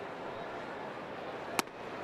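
A 90 mph fastball popping once into the catcher's mitt, a sharp crack about one and a half seconds in, over the steady hum of the ballpark crowd.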